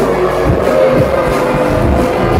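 Drum and bass DJ set played loud over a club sound system: heavy bass and beats under a held synth note.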